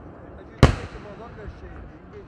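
A single aerial firework shell bursting with one sharp, loud bang about half a second in, its report trailing off quickly.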